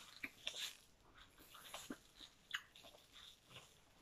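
Faint close-up eating sounds: a person chewing a mouthful, with scattered small wet clicks and crunches at irregular intervals.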